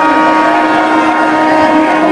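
A loud, steady drone made of several held tones that do not change in pitch.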